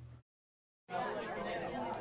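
A moment of dead silence, then low chatter of many overlapping voices, a classroom talking, starting about a second in.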